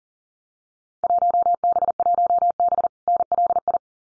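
A steady Morse code tone near 700 Hz, keyed at 40 words per minute, sends a Field Day contest exchange: class 1B, section Long Island. It starts about a second in, breaks briefly at the word space near three seconds, and stops just before the end.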